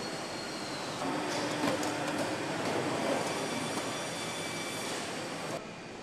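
Steady machinery noise of a car assembly hall, with faint steady tones and scattered metallic clicks. Busier in the middle, it changes abruptly and becomes quieter and duller a little before the end.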